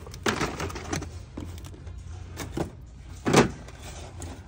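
Cardboard toy boxes being shifted and knocked on a store shelf: a few short knocks and scrapes, the loudest near the end, over a low steady hum.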